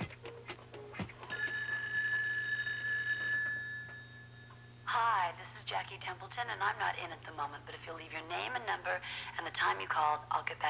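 A telephone rings once, a steady electronic tone lasting about three and a half seconds. An answering machine then picks up and plays its recorded outgoing greeting.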